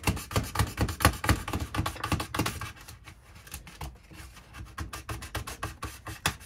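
A knife blade sawing and scraping through an Ethernet cable inside a Starlink terminal's hollow plastic mast, a quick run of short scraping strokes that thin out and grow softer after about three seconds.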